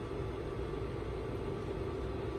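Water boiling in a metal rice-cooker inner pot on a Tescom 1000 W induction cooktop: a steady bubbling hiss.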